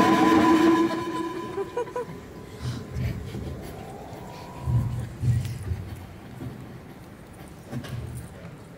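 Electronic sci-fi 'teleporter' sound effect over a hall's PA as a projected 3D point-cloud avatar breaks up and vanishes: a loud sustained hum dies away in the first second, then a faint tone rises in pitch and a few low rumbles follow.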